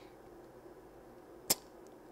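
Quiet room tone broken by a single short, sharp click about a second and a half in.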